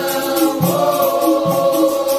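Capoeira roda music: a group singing a chorus in unison over hand percussion, with a steady low drum beat and a shaking jingle.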